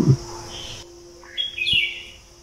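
A bird chirping in a short run of quick high chirps in the second half, after one faint chirp just before, over a faint steady low tone.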